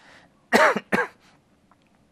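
A man clearing his throat with two short, loud coughs, about half a second and a second in.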